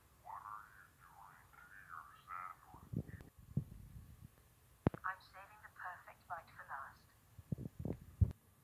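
A high, thin, telephone-like cartoon character voice speaking two short phrases, with a few short dull thumps between them.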